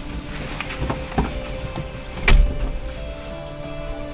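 A person climbing into a car: small knocks as he settles into the seat, then the car door shutting with a solid thump a little over two seconds in, over soft background music.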